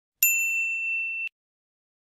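Notification-bell 'ding' sound effect: one bright ring that starts a moment in and cuts off suddenly about a second later.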